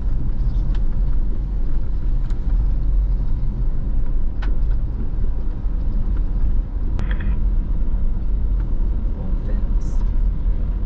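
Vehicle driving on a dirt ranch road, heard from inside the cabin: a steady low rumble of engine and tyres, with a few light knocks and a sharp click about seven seconds in.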